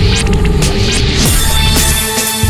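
Live electronic music played on controllers and an effects pad: a loud, deep bass drone with steady held tones above it and brief high accents.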